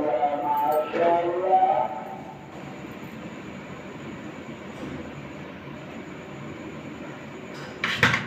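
A person's voice for the first two seconds or so, then a steady hiss. Sharp clatters near the end, like dishes being handled.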